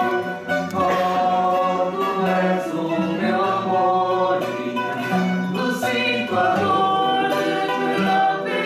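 A mixed choir of men's and women's voices singing a serenade, accompanied by plucked acoustic guitars.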